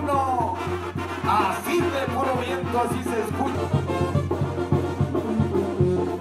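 Mexican brass band playing: trumpets carry the melody over a steady low beat.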